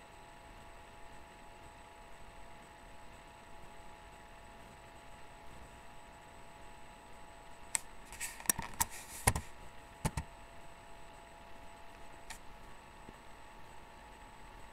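Faint steady electrical hum with thin whining tones, broken about eight seconds in by a quick cluster of clicks and knocks, then one more click a couple of seconds later.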